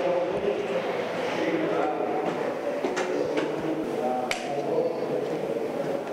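Footsteps on a stairwell, with a few sharp heel clicks around the middle, over steady room noise and faint indistinct voices.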